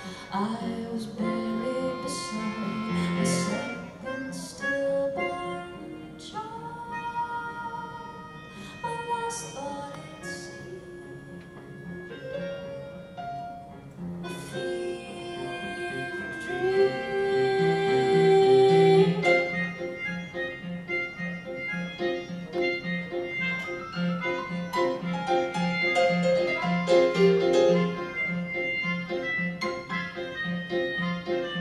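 Instrumental break in a live song: a melodica plays held, sometimes sliding melody notes over a Yamaha CP stage piano. In the second half the piano settles into steadily repeated chords, about two a second.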